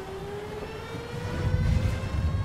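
A sustained siren-like tone that slowly glides upward in pitch, over a low rumble that swells near the end.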